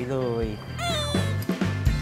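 Background music with a steady beat. About a second in comes a short, high, cat-like meow, a comic sound effect.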